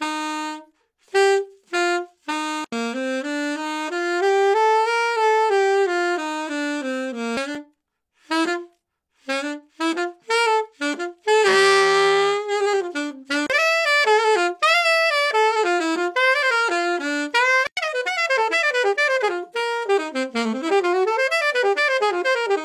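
Solo alto saxophone with no accompaniment, going from simple to more advanced playing. It starts with a few short, separated notes, then a slow melody that rises and falls, then a held note with a rough, buzzy edge about halfway through. Quick runs of fast notes fill the second half.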